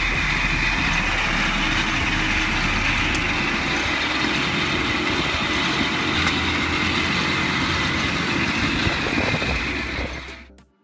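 A 48-cylinder motorcycle engine, made of sixteen Kawasaki 250 S1 two-stroke triples, running steadily as the bike rolls along at low speed.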